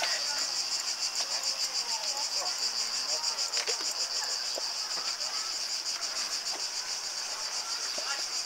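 Cicadas singing: a steady, high-pitched buzz that pulses about four times a second.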